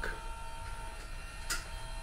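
Electric power bunk lift motor running as the overhead garage bunk beds lower, a steady motor hum with one short click about one and a half seconds in.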